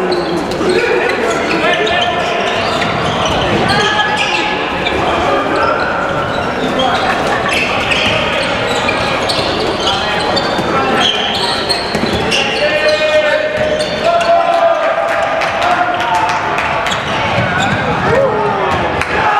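Indoor handball game: the ball bouncing on the court amid shouting voices, in a large, echoing hall.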